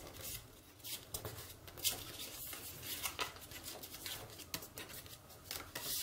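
Paper being folded and creased by hand: faint, irregular rustles and soft crinkles.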